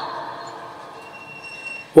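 A pause in loudspeaker-amplified preaching: the tail of the preacher's drawn-out shout dies away over the first half-second, leaving a low background hiss with a faint, thin high tone about a second in.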